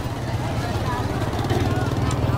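Small motorbike engine running close by, a steady low drone, with people chattering all around.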